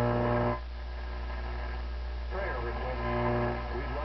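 Vintage Western Electric 10A tube radio receiver being tuned across the AM broadcast band. A low steady hum runs underneath, which the owner puts down to bad capacitors still in the set. Over it come short snatches of station audio: a held tone that cuts off about half a second in, a few words in the middle, and another brief held tone.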